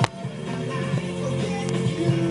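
Music playing from a radio, with steady held notes. A sharp click comes right at the start.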